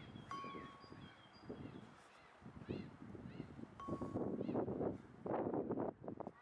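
Small birds chirping again and again, with a short clear whistled note twice, over irregular low background noise that grows louder in the second half.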